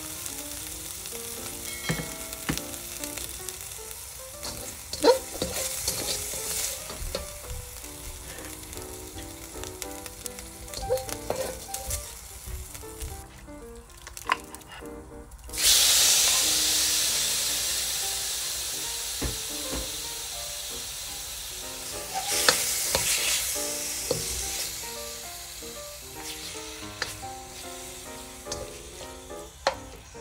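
Hot oil sizzling in a stainless steel pan while a slotted spatula scrapes and clicks against the metal. About halfway through, raw beef chunks are tipped into the pan, setting off a sudden loud burst of sizzling that slowly dies down, then rises again as the meat is stirred.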